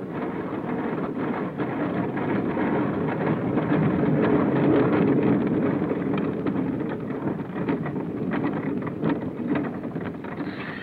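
Boatyard work noise: a steady rumble, loudest about midway, with many irregular knocks and clatters over it.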